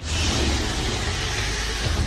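Sound-design rush for a comet hurtling through space: a steady rushing noise over a deep rumble, cutting in abruptly out of silence.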